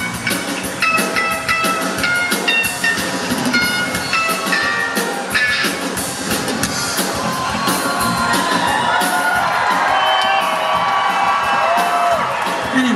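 Live rock band playing loud, led by an electric guitar: quick runs of short, separate high notes through the first half, then longer, held and bending notes.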